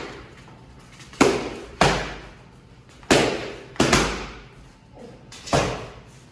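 Boxing gloves striking focus mitts: five sharp punches, mostly in quick pairs, each with a short echo after it.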